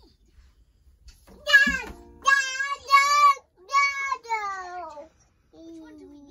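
A high-pitched voice singing a short phrase of five held notes, each wavering in pitch, starting about a second and a half in and ending about a second before the end.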